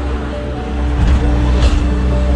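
Steady low rumble of a moving sightseeing bus, with music playing over it.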